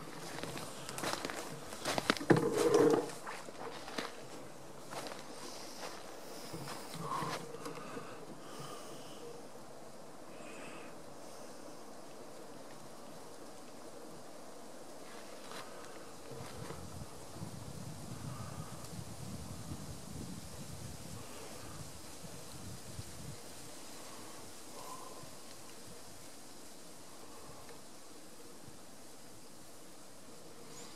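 Quiet woodland ambience with a faint steady insect hum and a few brief distant bird calls. Close rustles and knocks stand out in the first three seconds, and a soft low rumble passes through the middle.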